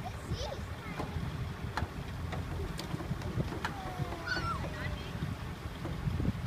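Low, steady rumble of a recovery truck's engine driving its crane as it lifts a heavy truck, with a few sharp clicks and birds chirping now and then. A faint drawn-out falling squeal runs for about a second past the middle.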